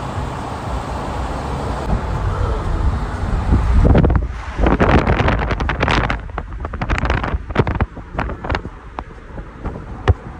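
Wind buffeting a phone's microphone over the steady low rumble of a moving vehicle. The buffeting grows loud and crackly about four seconds in, then eases off near the end.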